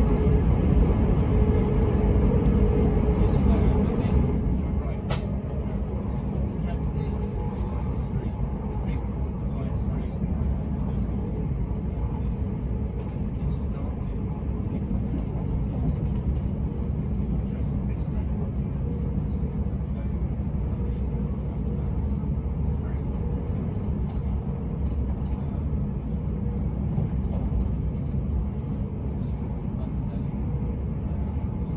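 Cabin noise of a Bombardier Electrostar Class 387 electric multiple unit running at line speed: a steady low rumble of wheels on rail and body vibration. It is a little louder at first and eases slightly about four seconds in.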